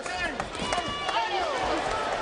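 A man's voice speaking: broadcast commentary on a boxing match.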